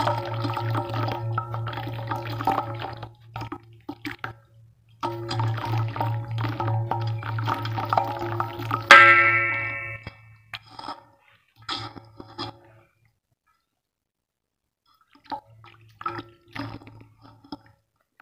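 Hands squeezing and crumbling lumps of wet red dirt in a basin of muddy water, with splashing and squelching, over steady background music. About nine seconds in there is a single bright ringing clink. The sound cuts out for about two seconds near the end.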